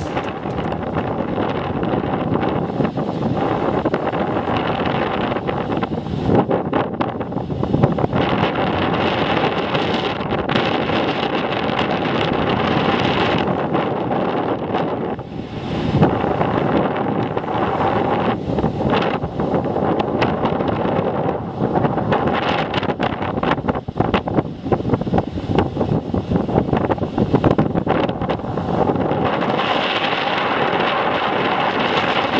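Atlantic surf breaking and washing over a rocky shore, with strong wind buffeting the microphone throughout.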